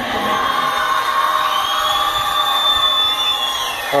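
A crowd cheering, with long held shouts, played back through a computer's speakers.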